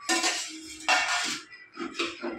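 Steel spatula scraping a dosa off a flat iron tawa and clattering against a steel plate, in two harsh scrapes about a second apart.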